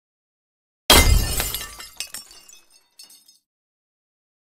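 Glass-shatter sound effect: a sudden crash about a second in, with a deep thud under it, then scattered tinkling pieces that die away over the next two seconds.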